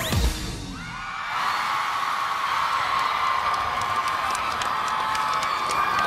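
A pop song stops on its final hit, then a large crowd of fans cheers and screams, rising about a second in and holding steady.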